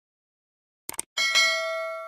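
Subscribe-button animation sound effect: a quick double mouse click just under a second in, then a bright notification-bell ding that rings on in several steady tones and slowly fades.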